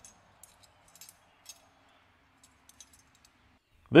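Faint light clinks and ticks of a metal exhaust mounting bracket and bagged hardware being handled, a few scattered small knocks rather than any steady sound.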